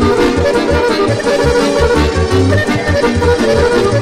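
Instrumental Serbian kolo folk dance music: a lively, quick tune over a running bass line and a steady, even beat.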